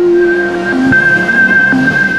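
Logo intro sting: synthesized music with a rising whoosh and a single high tone held steady.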